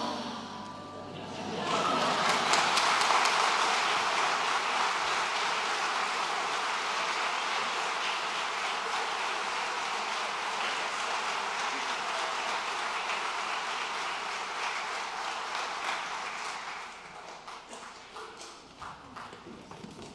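A choir's final chord dies away in the first second, then an audience applauds, a dense steady clapping that thins to scattered claps near the end.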